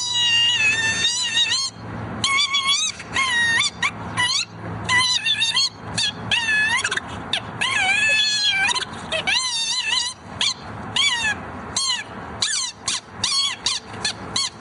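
High-pitched squealing tones whose pitch bends up and down: a long wavering stretch at first, then many short squeaks in quick succession near the end.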